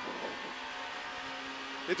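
Renault Clio R3 rally car's engine running under power at a steady pitch, heard from inside the cabin.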